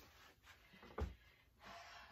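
A single soft knock about a second in, a picture frame being set down on a shelf; otherwise near silence.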